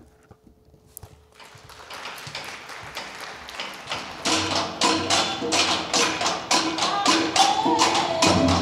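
Student percussion ensemble of a large barrel drum and snare drums playing a steady beat. It builds up from near quiet at the start and turns into a loud, regular run of drum strokes from about four seconds in.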